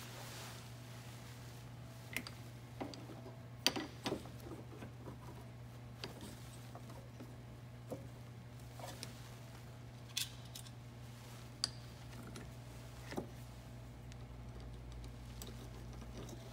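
Scattered light metallic clicks and taps, about ten in all, as AC refrigerant line fittings are worked back onto an expansion valve by hand. A steady low hum runs underneath.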